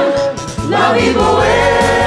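Several voices singing together over a musical-theatre backing track. After a short break about half a second in, voices and bass come back in on a long held chord.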